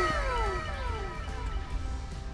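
An added sound effect: several tones sliding downward in pitch together and fading away over about the first second, over a steady low rumble.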